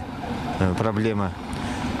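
A man speaking: only speech.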